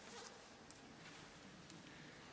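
Near silence: room tone with a faint hiss and two tiny clicks, one a little under a second in and one near the end.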